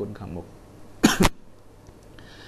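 A single short, sharp cough from a man, about a second in; it is the loudest sound here, following a few spoken words.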